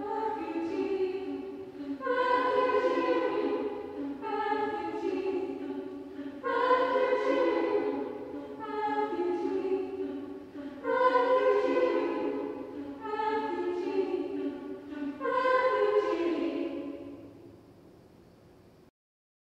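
Women's choir singing a cappella, repeating the word "refugee" in sustained chords that swell in again about every two seconds. The last chord fades away near the end.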